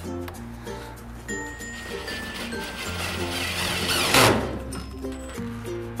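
Background music with a steady bass line and a simple melody, with a short burst of noise about four seconds in.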